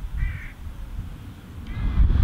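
A jackdaw gives two short calls, one just after the start and one near the end, over a low rumble of wind on the microphone.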